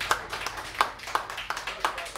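Audience applauding at the end of an acoustic song, with individual hand claps standing out sharply.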